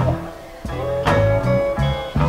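Slow blues guitar music with no singing: single plucked notes ringing over low bass-string notes, with a short dip in loudness about half a second in before the next notes are struck.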